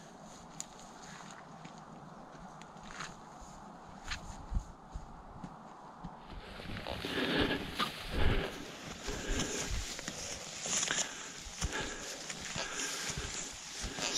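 Footsteps and rustling through long dry grass and scrub as hunters climb a hillside, one hauling a stag carcass on his back. Sparse at first, then louder and busier with scuffs and thuds from about six seconds in.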